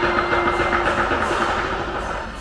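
Lion dance drum and cymbals playing a fast, even roll.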